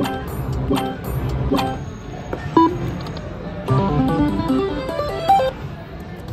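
Video slot machine's electronic sounds: short chime notes repeating about once every second, then, about four seconds in, a quick run of stepping beeps as the reels play out.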